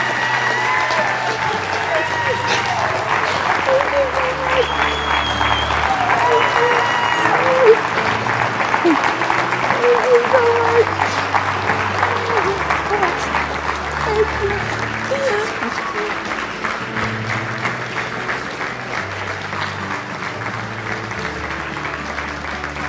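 A congregation applauding, with shouts and whoops of voices in the first several seconds; the clapping gradually thins toward the end. Sustained low music chords run underneath.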